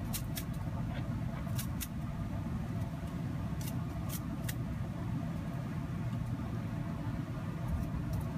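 Steady low outdoor background rumble, with about seven short, sharp clicks scattered through the first half, some in quick pairs.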